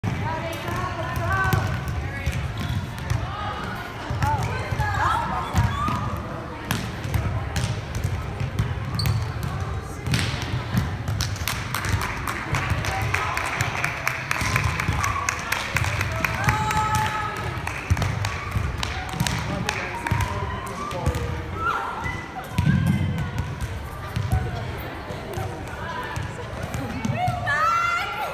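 Volleyballs being hit and bouncing on a hardwood gym floor during team warm-up, a stream of irregular knocks, over indistinct chatter of players' voices.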